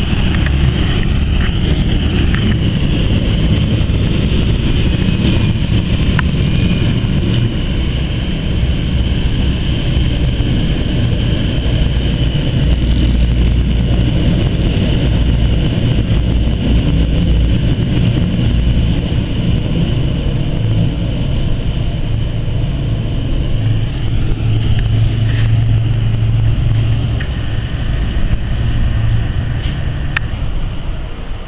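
Thames Clipper river catamaran's engines running, a steady low rumble with churning water from the wake. The rumble grows stronger near the end as a clipper passes close.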